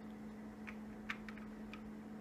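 A few light, irregular clicks and ticks as a small vape atomizer is unscrewed from its mod and handled, over a steady low hum.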